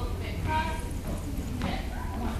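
Indistinct voices talking over a steady low hum, with a short vocal phrase about half a second in and another brief one near the end.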